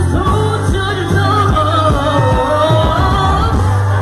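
Live band music with a man singing over it, a beat and bass underneath.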